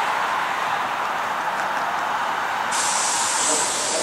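Bundang Line electric multiple unit moving slowly over the tracks, a loud steady running noise; near three seconds in a brighter hiss sets in on top.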